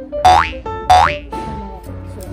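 Light background music with piano-like notes, broken twice by a short cartoon-style sound effect that sweeps quickly upward in pitch, about a quarter second and a second in.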